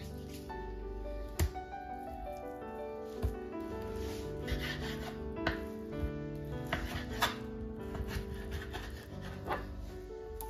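Gentle background music, with a knife cutting through raw meat on a bamboo cutting board. The blade knocks sharply against the wood about every two seconds.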